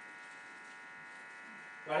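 A steady electrical buzz made of several even tones runs through a pause in a man's speech. He starts talking again right at the end.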